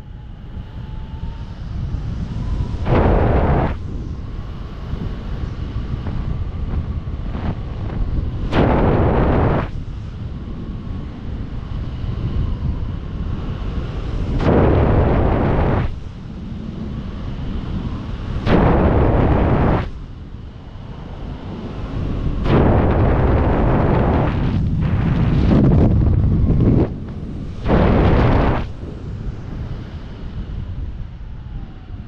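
Wind buffeting the camera microphone during a descent under a parachute canopy. It makes a constant low rumble, with louder gusts surging about every four to six seconds, one of them drawn out for several seconds near the end.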